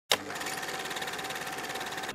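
Film-reel sound effect of a movie camera running: a rapid, even mechanical clatter with a steady whirring tone, starting with a sharp click.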